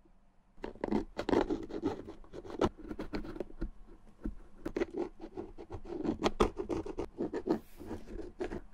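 A pointed metal pick scraping and picking around the metal eyelets of a leather Red Wing boot. It makes a quick, uneven run of small scratches and clicks that starts about half a second in.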